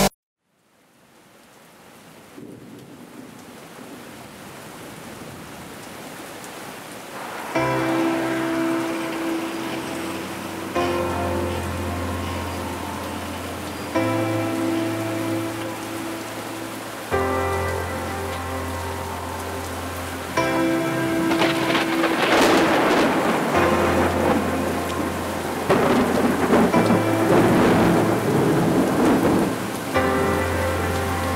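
Steady rain fading in and rising, with thunder rumbling over the last third. Background music of held chords comes in about a quarter of the way through, the chords changing about every three seconds.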